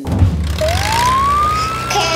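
Fire engine siren starting one slow wail, rising in pitch from about half a second in, over a low steady engine rumble.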